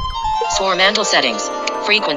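Swarmandal strum from a music-practice app: a quick sweep of plucked strings at the start that keeps ringing. A voice speaks over the ringing strings from about half a second in.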